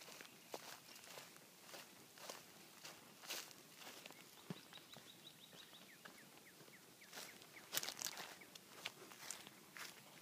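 Faint footsteps of a person walking over grass and dry leaves, a crunch about every half second, with a louder cluster of crunches near the end.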